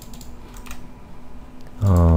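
A few faint mouse or keyboard clicks at a computer. Near the end comes a short, steady low hum, louder than the clicks.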